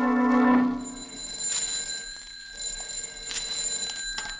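A held chord of a radio-drama music bridge ends about half a second in. A telephone then rings faintly in short bursts, twice, over a thin steady high tone.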